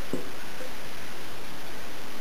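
Steady hiss of background noise with no distinct event, apart from one faint soft knock just after the start.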